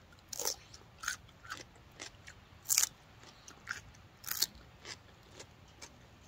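Crisp crunching as a raw young garden radish is bitten and chewed: short, sharp crunches at irregular intervals, about one every half second to a second, the loudest near the middle.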